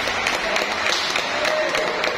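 Spectators clapping after a table tennis point, irregular claps over the noise of a hall, with voices talking in the background.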